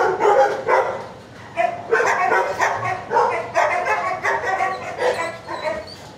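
Shelter dogs barking and yipping in quick succession, about two barks a second, with barks at different pitches overlapping.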